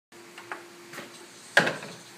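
Old upright piano struck by a small child's hand: a couple of faint knocks, then one loud sudden bang about one and a half seconds in that rings briefly.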